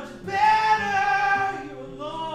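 A man singing one long, loud held note into a microphone, with his acoustic guitar ringing underneath; the note starts about a third of a second in and fades near the end.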